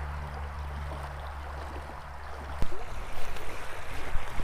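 A small creek's water running steadily over a low hum. From about two and a half seconds in, short irregular knocks and rustles come over the running water.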